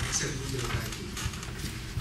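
Indistinct speech that the recogniser could not make out, a voice in the room.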